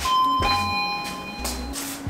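Electronic two-tone doorbell chime, 'ding-dong': a higher note at the start, then a lower note about half a second later, both ringing on and fading out.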